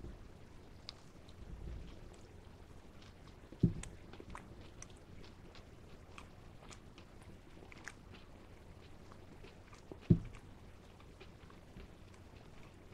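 A person chewing a bite of a fried, breaded plant-based chicken tender close to a microphone: faint, irregular mouth clicks and crunching, with two short low thumps, one about four seconds in and one near the end.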